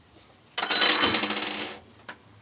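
A metallic jingling clatter with bright ringing tones, starting about half a second in and lasting just over a second.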